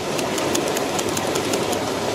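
Creek water rushing steadily over a riffle, with a scatter of small sharp clicks over it.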